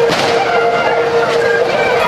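Bagpipes playing: one steady drone held under a moving chanter melody.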